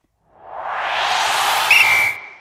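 Edited transition sound effect: a whoosh that builds over about a second and a half, with a short high ping near the end.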